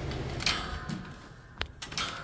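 Attic exhaust fan running with a steady low hum, which fades after about a second, followed by a few sharp clicks.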